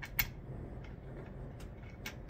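A sharp metallic click a moment in, then a few faint ticks, as hands handle the metal parts of a telescope mount.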